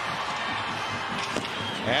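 Hockey arena crowd noise: a steady murmur from the crowd, with a faint sharp click about one and a half seconds in.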